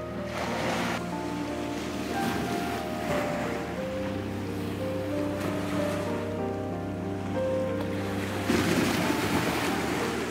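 Sea waves washing against a sea wall in repeated surges, the biggest near the end, under soft background music with long held notes.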